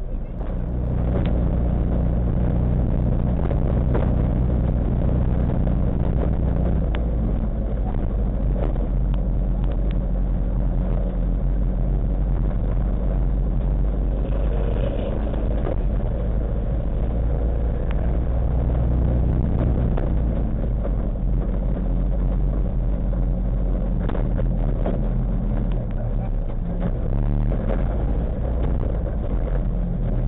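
Race car engine idling with a steady low rumble, heard from inside the cockpit as the car creeps forward, its note shifting slightly now and then.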